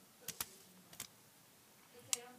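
A quiet room with three faint, short clicks: two close together about a third of a second in and one about a second in.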